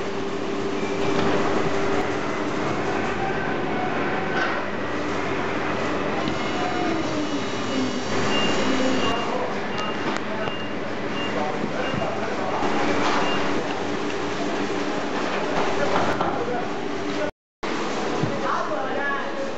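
Factory workshop din: a steady machine hum with voices in the background, a few light knocks of wooden panels being handled, and a string of short high beeps, about two a second, around eight to eleven seconds in. The sound cuts out for a moment near the end.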